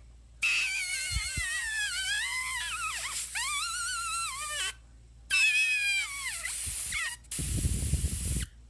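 Iwata Micron airbrush being back-bubbled, with a finger held over the tip to force air back through the paint cup and mix in reducer. The air comes out as a hiss with a wavering whistle in two long stretches, leaking past the finger because it is not pressed down hard enough, then a short low rumble near the end.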